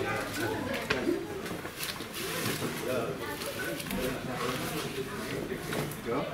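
Indistinct voices of several people talking in a room, with two short sharp knocks about a second in.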